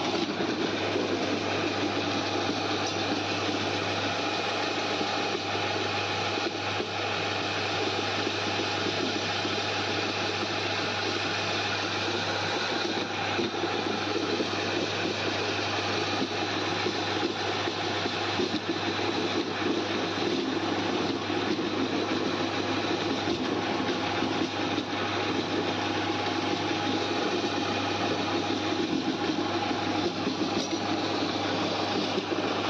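Electric flour mill (chakki) running steadily while grinding spice into powder: a constant low motor hum under a dense grinding noise.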